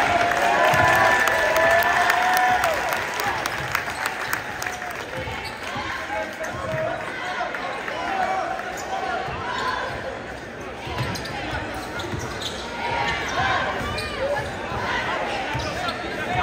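Basketball dribbled on a hardwood gym floor, repeated bounces under the voices of a crowd in a large echoing gym.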